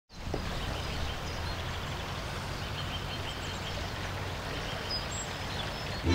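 Outdoor ambience: a steady background hiss with faint, short bird chirps, a quick run of them in the first half and a couple more near the end.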